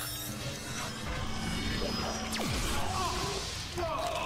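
Dramatic TV-drama soundtrack: sustained score under the scene, with a sound effect that sweeps steeply down in pitch about two and a half seconds in.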